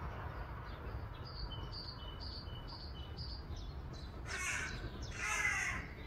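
Outdoor birdsong: a small bird repeating short, high chirps about twice a second, then two loud, harsh caw-like calls about a second apart near the end, over a steady low rumble.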